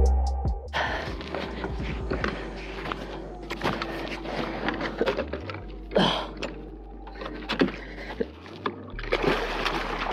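Background music cutting off in the first half-second, then water splashing and sloshing at the kayak's side as a hooked king salmon thrashes at the surface and is brought to the net, with scattered sharp knocks.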